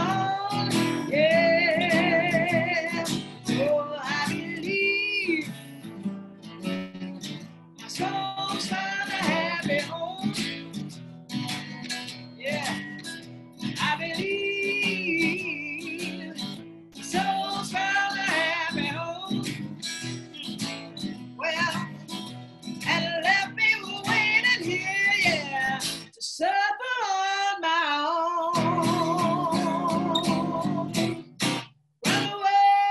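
A woman singing a slow blues with wide vibrato over strummed acoustic guitar, with short pauses between the sung phrases.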